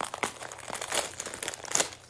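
Clear plastic bag of craft moss crinkling in the hands as it is pulled open, a run of irregular sharp crackles.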